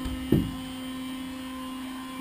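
A steady low hum, with one short low bump about a third of a second in.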